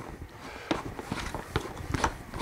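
Plastic filter cartridges being screwed onto a 3M Breathe Easy PAPR turbo unit by hand: irregular light clicks and plastic scraping.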